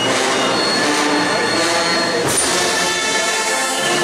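Band music with long held chords, led by brass.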